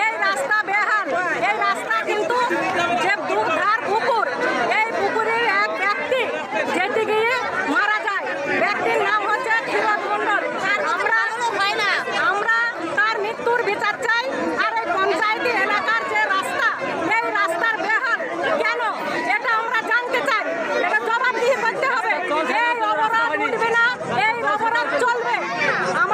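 Speech only: a woman talking loudly and emphatically in Bengali, with other voices chattering around her.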